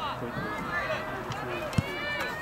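Several voices of players and spectators calling out across a soccer field, overlapping one another, with one short, sharp thump near the end.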